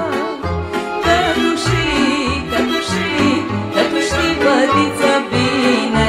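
Live Romanian folk party music: an accordion playing quick, ornamented runs over a pulsing bass beat in a short instrumental break between sung lines.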